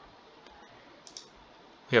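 Computer mouse clicking faintly over a low background hiss: one light click about half a second in, then a quick pair of clicks about a second in.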